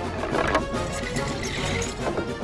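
Cartoon score music playing over the clattering sound effects of a wooden ball-run contraption of gears, buckets and chutes at work.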